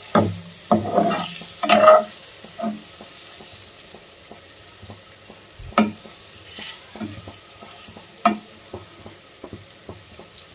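Hard-boiled eggs frying in oil spiced with turmeric, chilli powder and garam masala, with a quiet sizzle. A utensil stirs and turns them, knocking sharply against the pan several times, most clearly about six and eight seconds in.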